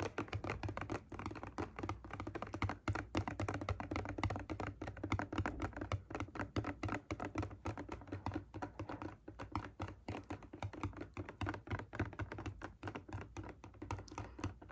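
Fingernails tapping quickly and irregularly on a plastic spray bottle of cleaner, a close, steady run of many small taps.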